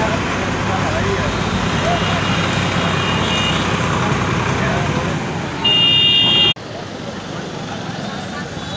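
Outdoor roadside hubbub of many voices talking over traffic noise. Near the end a vehicle horn sounds loudly for under a second, then the sound drops abruptly.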